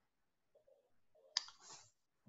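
Near quiet with a single sharp click about one and a half seconds in, followed by a brief soft hiss.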